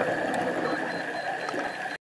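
Underwater ambience heard during a dive: a steady hiss with a constant high hum and scattered faint clicks, cutting off suddenly at the end.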